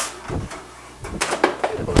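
Metal pizza peel sliding under a baked pizza and scraping and clicking against the metal pizza screen and oven rack. A dull knock comes about a third of a second in, and a quick run of clicks and scrapes follows in the second half.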